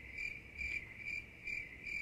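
A calling insect: a steady high-pitched trill that swells about twice a second, faint in the background.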